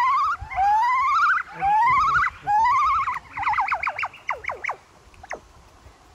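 Chimpanzee calling: four rising, wavering hoots in a row, then a quicker run of short, falling calls, dying away near the end.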